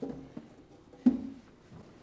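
Refrigerator door shut with one sharp thump about a second in, preceded by softer knocks of items being handled on the fridge shelves.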